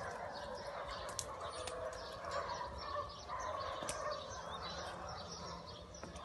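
A continuous overlapping chatter of many animal calls, with scattered sharp high clicks.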